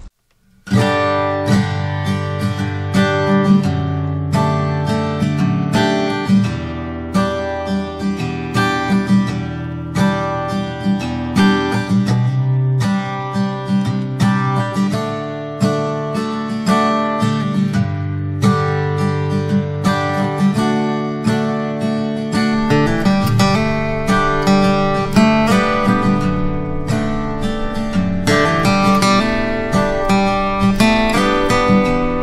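Background music: acoustic guitar strummed and plucked in a steady rhythm, starting about a second in after a moment of silence.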